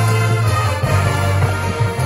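Marching band playing sustained chords over a strong, steady low bass note, with the front ensemble's keyboard percussion.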